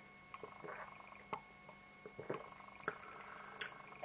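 A man sipping beer from a glass and swallowing: a few faint gulps and mouth clicks at irregular intervals.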